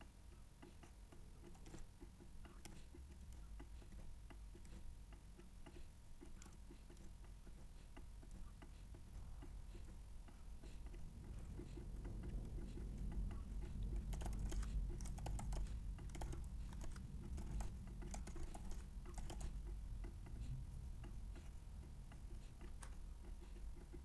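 Faint computer keyboard typing and mouse clicks, rapid and uneven. The clicks grow denser and louder from about halfway through.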